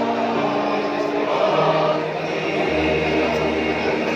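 Mixed SATB choir singing, holding long sustained chords through the first second or so.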